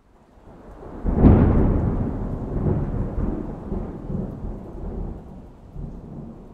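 Thunder: it swells out of silence, breaks into a loud crack about a second in, then rolls on as a long low rumble that slowly fades.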